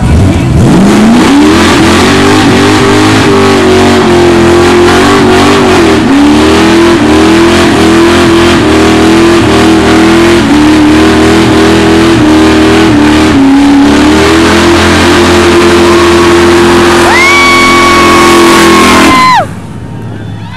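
A car engine is revved hard through a tyre-smoking burnout. It climbs quickly to high revs in the first second or two and then holds there, wavering and dipping briefly a few times as the rear tyres spin. A high steady squeal joins for the last few seconds before the sound cuts off abruptly.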